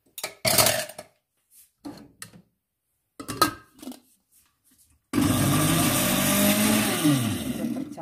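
A countertop blender with a glass jug runs for about three seconds in the second half, pureeing boiled pumpkin with coconut milk and sugar; its motor pitch drops as it spins down near the end. A few short knocks and clinks come before it.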